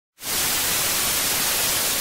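Television static sound effect: a steady, even white-noise hiss, the sound of an untuned TV. It cuts in just after the start and holds level.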